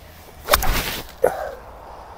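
Golf iron swung through and striking the ball off the fairway turf: one sharp strike about half a second in, with a short rush of noise after it, then a brief second sound just after a second in.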